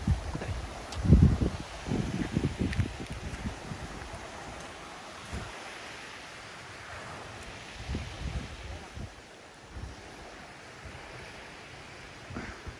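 Wind buffeting the microphone in gusts, loudest about a second in and again around eight seconds, over a steady hiss of breeze and light surf on a sandy beach.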